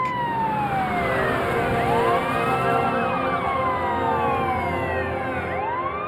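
Police car sirens wailing, each rising and falling in slow sweeps of a few seconds, with at least two sirens overlapping out of step.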